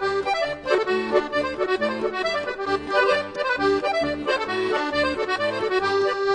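Accordion music: a lively tune over a steady, regular bass beat, playing throughout.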